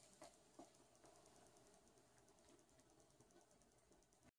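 Near silence, with a few faint clicks of a wire whisk stirring batter in a glass bowl, the clearest in the first second.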